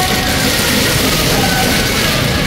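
Loud, steady amplified music played from a decorated temple-procession music float (koh-tshue, 閣吹).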